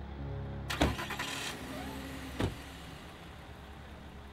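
Car sounds: a loud rattling burst about a second in, then a single sharp thump halfway through, over a steady low music bed.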